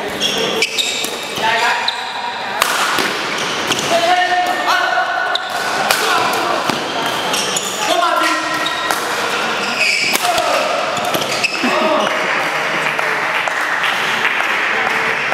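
Badminton doubles rally in a sports hall: a string of sharp racket strikes on the shuttlecock, with footfalls and shoes squeaking on the court floor, over a steady murmur of voices in the hall.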